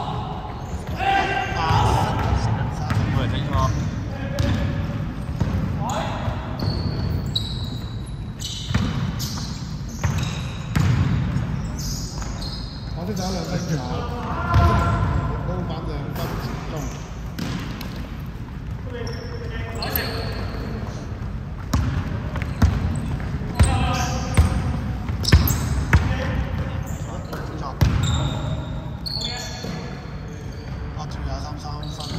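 Basketball bouncing on a hardwood gym court during live play, with a run of short knocks and players' voices calling out.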